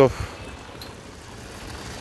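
Distant road traffic: a steady, even background noise with no distinct events.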